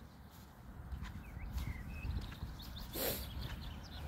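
Outdoor sound on a handheld phone: a low wind rumble on the microphone with footsteps, a few faint short high chirps near the middle, and a brief rush of noise about three seconds in.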